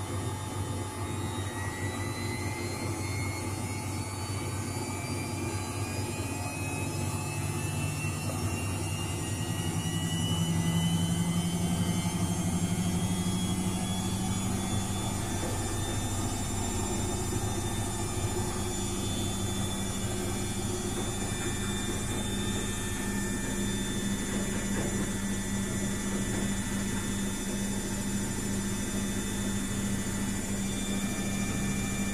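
Luxor WM 1042 front-loading washing machine spinning up: the motor's whine climbs steadily in pitch over about fifteen seconds as the drum gathers speed, then holds steady at spin speed over a low hum.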